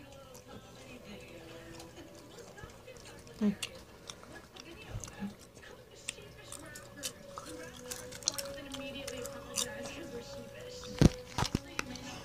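Popcorn being chewed, with scattered small crunches and mouth clicks, and a sharp knock near the end.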